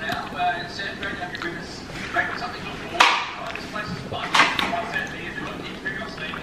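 Wet slurping and sucking of ripe mango flesh being eaten off the seed by hand, with two loud, sharp slurps about three seconds in and just after four.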